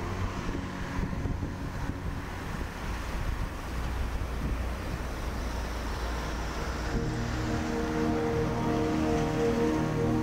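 Wind rushing on an outdoor microphone, a steady gusty noise, under soft background music whose long held chords come up about seven seconds in.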